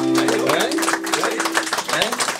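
Acoustic guitar's final chord ringing out and fading as a song ends, with audience clapping starting about half a second in.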